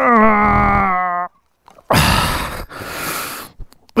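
A man's long pained groan, falling slightly in pitch, then two rough, heavy breaths: he has been winded in a fall from an adventure motorcycle.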